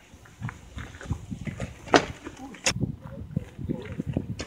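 A 36-inch unicycle's tyre and the rider's feet crunching and scuffing on loose gravel as the rider mounts and sets off: an irregular run of short crunches and knocks, the sharpest about two seconds in.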